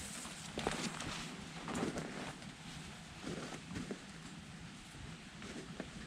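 Faint rustling and a few scattered light knocks as bendable vine branches are handled and fitted into an enclosure.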